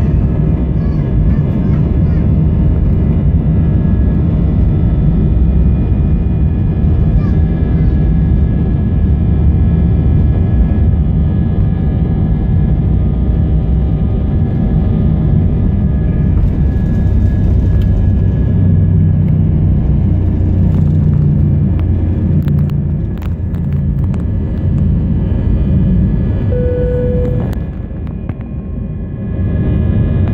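Airbus A319 jet airliner on its takeoff roll, heard from inside the cabin: engines at takeoff thrust with a steady low rumble of the wheels on the runway, easing near the end as the aircraft lifts off and climbs.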